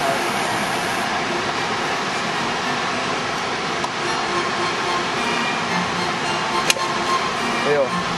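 Loud, steady outdoor rushing noise, with a single sharp click near the end.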